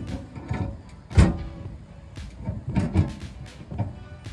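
Clicks and knocks of a metal propane hose connector being worked onto a griddle's gas inlet fitting, several in a row, the loudest about a second in.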